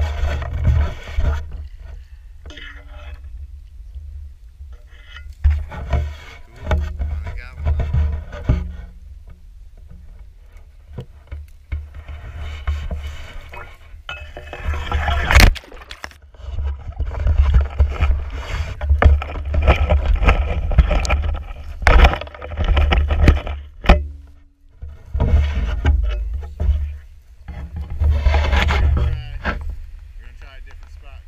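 Wading through shallow water and dead reeds: splashing, and reed stalks brushing and scraping against the head-mounted camera, in irregular bursts with heavy rumble on the microphone. Sharp cracks about fifteen and twenty-two seconds in.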